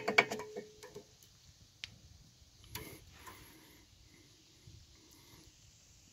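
Light metallic clicking from hands working on a rear disc brake caliper and its pads: a quick run of ticks that dies away within the first second, then a few scattered clicks and a soft knock about three seconds in.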